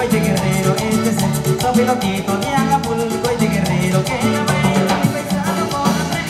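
A live band playing Latin dance music through loudspeakers: bass and guitar lines over a quick, even beat of percussion.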